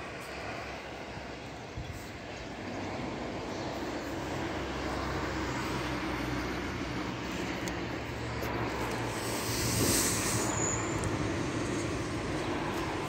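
Distant street traffic: a steady rumble with a low engine hum from a large vehicle swelling after a few seconds, and a brief louder hiss about ten seconds in.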